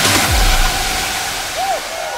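Techno track dropping into a breakdown: a fast rolling synth line cuts out and a deep bass hit sweeps downward, then a steady hiss-like wash of noise is left hanging.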